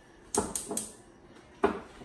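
Kitchen clatter: a quick run of sharp knocks and clicks from cookware and utensils about half a second in, then one single sharp knock near the end.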